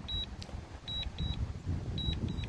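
DJI Mini 2 remote controller beeping its return-to-home alert: short high double beeps, about one pair a second, over an uneven low rumble.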